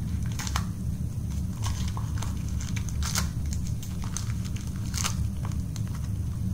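Plastic toy packaging crinkling and crackling as it is handled, with scattered small clicks, over a steady low hum.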